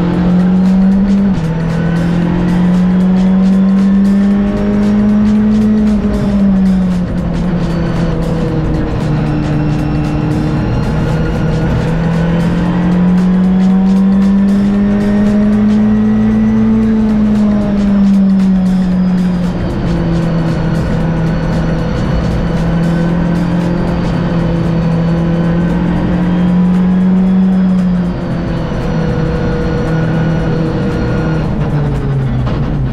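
Rally car engine heard from inside the cabin, its pitch climbing and falling slowly as it pulls through the gears, with several sudden drops in pitch at the gear changes.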